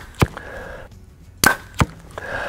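Compound bow shots fired with a thumb-button release at a 3D deer target. An arrow hits the target about a quarter second in. About a second and a half in the bow fires again with a sharp crack, and that arrow hits the target about a third of a second later.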